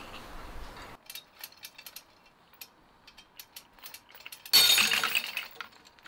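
Small metal clicks from steel hooks and chain taking up load. About four and a half seconds in, a loud sudden snap as the epoxy-coated 3D-printed PLA tensile specimen breaks, with a brief clatter of the hardware.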